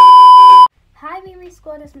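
Loud, steady test-tone beep of the kind played over TV colour bars, one pitch held for under a second and then cut off suddenly.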